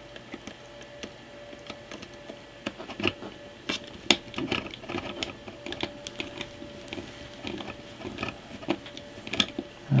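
Small screwdriver driving screws through a Raspberry Pi 4 board into its plastic case: irregular small clicks and scrapes of metal on plastic as the screws are turned and seated.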